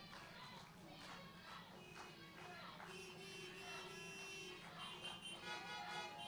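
Faint, nearly silent ambience: a steady low hum with scattered faint pitched tones and distant voices, one tone held for over a second about halfway through.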